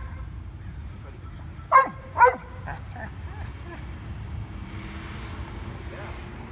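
Shepherd-mix dog giving two short, high-pitched whining yips about half a second apart, a little under two seconds in. The trainer reads this vocalizing as frustration at another dog.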